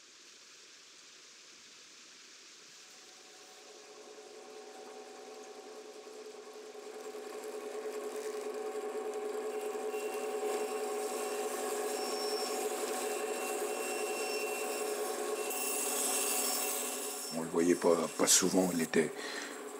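Electric band saw running, its steady hum fading in and growing gradually louder, with the hiss of the blade cutting wood near the end.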